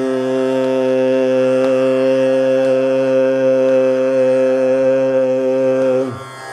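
A male voice singing one long, steady held note in Carnatic style, with no change in pitch; it stops at the very end.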